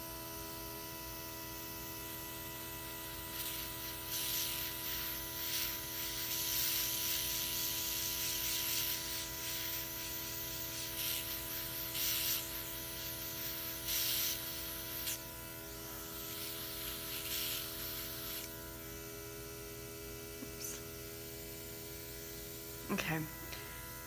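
Luminess Air airbrush makeup system: its small compressor running with a steady hum, while the airbrush hisses in a series of short sprays of liquid eyeshadow from a few seconds in until about three-quarters of the way through.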